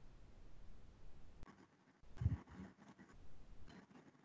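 Quiet room tone with a faint low hum, broken by a brief muffled low thud about two seconds in.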